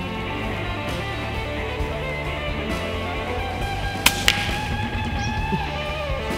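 Background music with steady tones, over which an FX Impact PCP air rifle fires a single shot about four seconds in, followed a fraction of a second later by a second, fainter snap.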